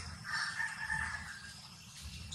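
A rooster crowing once, a single call of about a second and a half.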